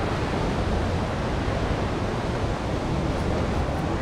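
Steady rushing of a fast-flowing river, with wind rumbling on the microphone.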